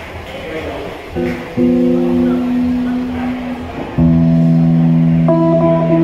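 Seven-string headless guitar played through an amplifier, starting a song with sustained chords: the first comes in about a second in, then a louder, fuller chord rings out about four seconds in with higher notes added near the end.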